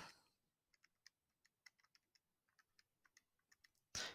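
Calculator keys being pressed: a run of faint, irregular clicks as values are keyed into its simultaneous equation solver.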